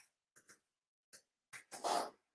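A man's short breaths and sniffs close to an earphone-cable microphone, ending in a louder breathy exhale through the nose near the end, with dead silence between them.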